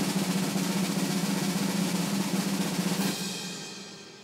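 A rapid snare drum roll, added as a suspense sound effect. It starts abruptly and fades out over the last second or so.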